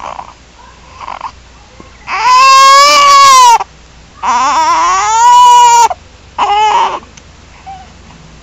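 Four-week-old baby crying: two long wails, the first about two seconds in and the second about four seconds in, then a short third cry near seven seconds.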